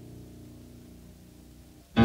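A low held chord from piano and orchestra dies away slowly and quietly, then the music comes back in loudly at the very end.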